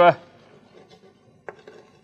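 Chalk scratching on a blackboard as an arrow is drawn, with a sharp tap of the chalk about one and a half seconds in.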